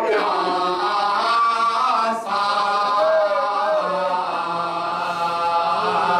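A lead male reciter chanting an Urdu devotional salam into a microphone in long, held melodic lines, with other men's voices backing him.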